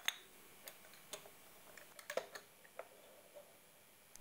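Faint, scattered light clicks and taps, about eight in four seconds, the sharpest just after the start and another about two seconds in.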